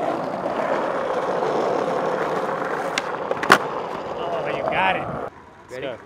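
Skateboard wheels rolling steadily on asphalt, with a sharp clack of the board about three and a half seconds in. The rolling stops at about five seconds.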